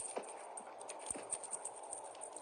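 A kitten playing with a dangled toy on a woven rug: quick, irregular light clicks and taps over a steady hiss.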